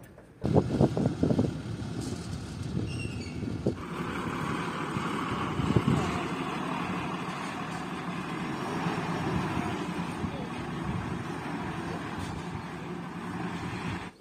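A diesel truck engine running steadily, with men's voices over it.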